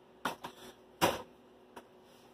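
Plastic ready-meal trays handled and put down: three short knocks and clicks, the loudest about a second in.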